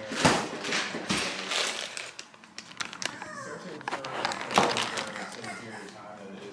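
Crinkling of a plastic dog-food bag being handled, in several short rustles, with high-pitched whining from a French bulldog puppy.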